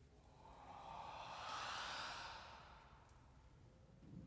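Chamber choir breathing out together: a soft, unpitched rush of breath that swells for about a second and a half and then fades away, used as a sound in the piece rather than sung notes.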